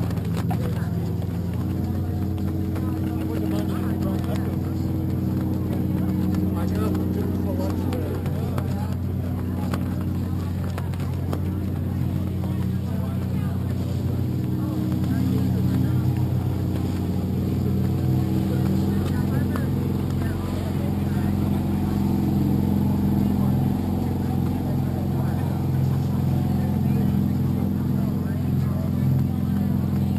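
A motor running steadily, an even low drone that holds a few steady pitches throughout.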